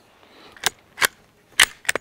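Bolt of a Savage .222 bolt-action rifle worked by hand: four sharp metallic clicks as the action is cycled, an action that runs really smooth.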